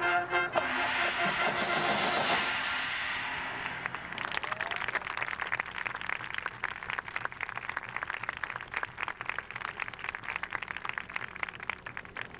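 Drum and bugle corps horn line and drums sounding a loud held chord that cuts off about two and a half seconds in. After a short gap, a crowd applauds.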